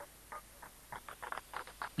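A few faint, scattered handclaps from an audience, irregular and sparse, growing slightly denser towards the end.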